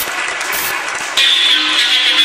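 Channel logo intro sound: a dense noisy rush like a whoosh, then music entering about a second in with a bright held high note over a steady backing.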